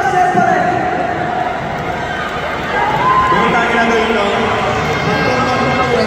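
Voices speaking over a crowd's hubbub in a large hall.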